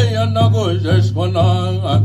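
A man sings an Apache chant in wavering vocables that slide up and down in pitch. Pot-bodied water drums beat an even pulse under the voice, about two strokes a second.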